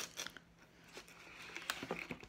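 Packaging being handled close to the microphone: light crinkling and clicking, a few scattered crackles at the start and a denser run of crackling in the second half.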